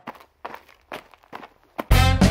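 Footsteps of a person running in sneakers, about two steps a second. Upbeat swing music starts suddenly just before the end.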